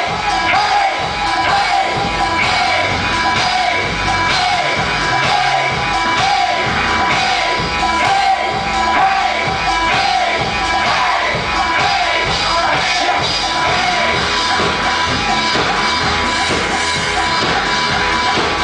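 Live rock band playing loudly with electric guitar and shouted singing, crowd voices mixed in, recorded from the audience in a club.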